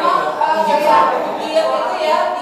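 A woman speaking.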